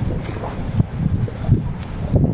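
Wind buffeting an action camera's microphone: a loud, uneven low rumble that swells and drops in gusts.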